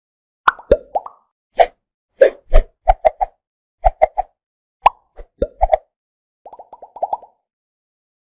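Animated logo intro sound effects: a string of short cartoon pops, each a sudden blip with a quick slide in pitch, in an uneven rhythm, then a quick run of fainter, smaller blips near the end.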